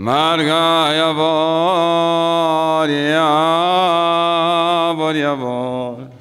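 A man's voice chanting one long held phrase of a Yazidi religious chant, with small ornamental turns in pitch, stepping down to a lower note near the end.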